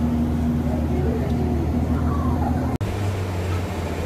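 Steady interior running noise of a moving road vehicle, a low hum with a held tone. About three seconds in it cuts suddenly to the steady low hum inside a light rail car.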